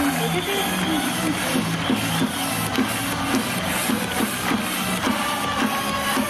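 Upbeat electronic music with a steady beat, played over a baseball stadium's loudspeakers during the starting-lineup introduction.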